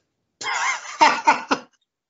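A man's short laugh: a wavering high-pitched note, then three quick bursts, all over in about a second.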